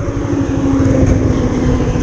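Motorcycle engine running, its steady tone easing slightly lower, under a heavy low rumble of wind on the microphone.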